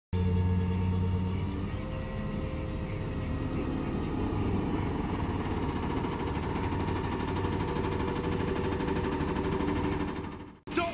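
Flatbed tow truck running steadily as its hydraulic winch pulls a car up the tilted bed. Its pitch shifts about two seconds in.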